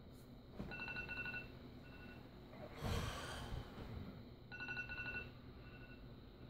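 Phone alarm tone beeping in a repeating pattern: a run of rapid beeps lasting about a second, then one short beep, heard twice. A brief, louder rush of noise comes about halfway through.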